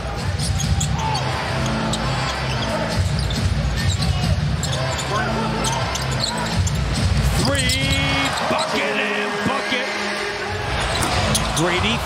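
Basketball game sound in an arena: a ball dribbling and bouncing on the hardwood court as short sharp knocks, over the steady noise of the crowd.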